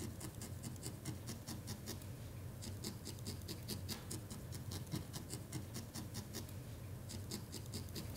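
A barbed felting needle stabbing repeatedly into wool, tacking fibre into place. It makes a quick, even run of light scratchy pokes, several a second.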